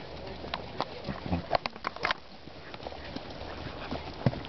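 Horses' hooves on a dirt trail, an irregular clopping with a cluster of sharper knocks between about one and two seconds in.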